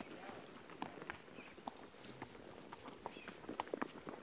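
Horse's hooves striking a stony dirt trail under a rider: irregular clip-clop, several strikes a second, with a run of louder strikes near the end.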